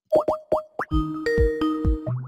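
A short comic sound-effect jingle: four quick rising bloops, then about a second of held synth notes over a few low thumps.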